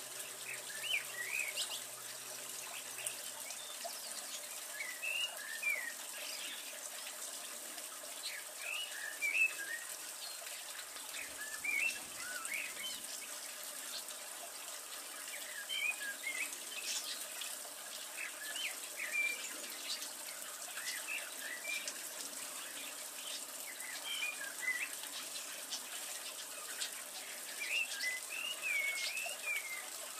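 A songbird singing short whistled phrases, one about every three to four seconds, over a steady background hiss.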